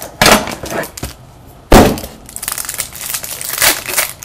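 Trading-card packaging being torn open and handled by hand: two sharp rips, one just after the start and a louder one a little under two seconds in, then a run of crinkling.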